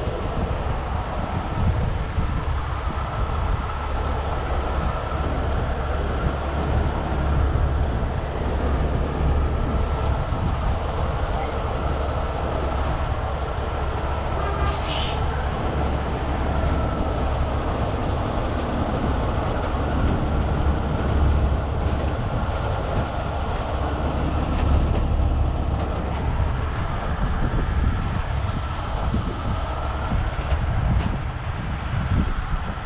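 Diesel engine of a Miller Industries Vulcan 950 rotator tow truck running steadily under load, with a steady whine over a deep rumble, as it powers the boom lifting a container. A short hiss comes about halfway through.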